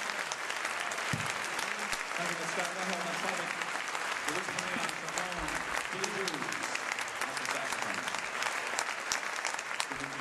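Large theatre audience applauding, a steady dense clatter of many hands clapping, with a voice heard through it in the middle.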